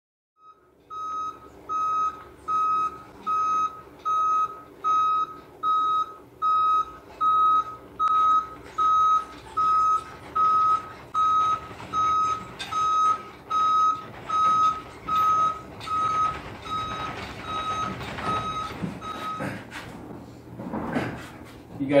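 Box truck's reversing alarm beeping steadily, about four beeps every three seconds, over the low running of its engine. The beeps stop near the end and give way to a couple of seconds of louder, rougher noise.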